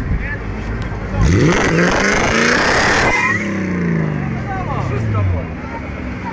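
A 4.4-litre BMW V8 idling, then revved hard about a second in, with the tyres spinning and hissing over it for about two seconds. The revs then fall away steadily over the next two seconds.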